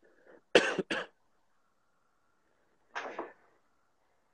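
Two sharp coughs in quick succession about half a second in, followed by a quieter short sound about three seconds in.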